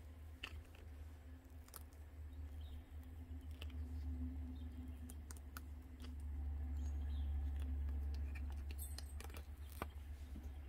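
Silicone mold being peeled off a cured resin coaster, with scattered small clicks and crackles as it comes away. A steady low hum runs underneath, swelling for a few seconds past the middle.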